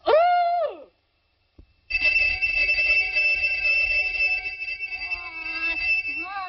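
A short call rising and falling in pitch, then about a second of silence, then a loud, steady high-pitched ringing like an alarm bell that holds on, with a wavering melody joining it near the end.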